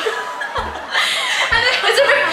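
Two women laughing together, with bursts of chuckling and a few half-spoken words between the laughs.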